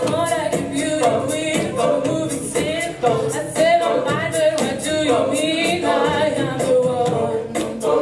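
A cappella vocal group singing a pop cover: a sung melody over backing voices, with a regular percussive beat throughout.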